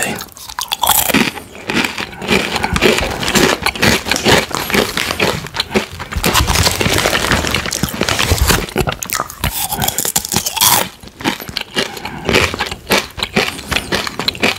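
Close-miked biting and chewing of Takis rolled corn tortilla chips: a dense run of irregular, crisp crunches throughout, with sharper loud crunches about a second in and again near the end.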